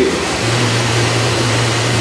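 A steady low mechanical hum that comes in about half a second in and holds level, over a constant background of noise.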